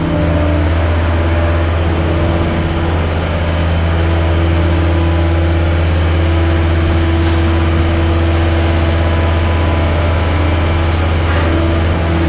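John Deere 326D skid steer's diesel engine running steadily as it drives in and sets down a stack of plastic crates, with a slight shift in engine pitch about four seconds in.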